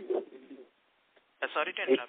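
Voices over a conference-call phone line that is breaking up: speech fades out, the line goes dead silent for under a second, then speech cuts back in.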